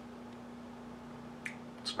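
Lip and tongue clicks while tasting: two short clicks in the last half second, over a steady low electrical hum in a quiet room.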